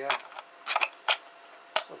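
A handful of sharp hard-plastic clicks and taps, about five, as a 3D-printed PLA adapter pushed onto a Dyson DC16 handheld vacuum's nozzle is handled and turned.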